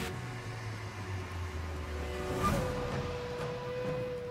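Dramatic television underscore: a low rumbling drone, then a swell about two and a half seconds in that settles into one held high note.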